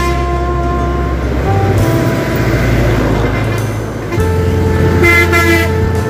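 Background music over road traffic passing close by, with a vehicle horn sounding about five seconds in.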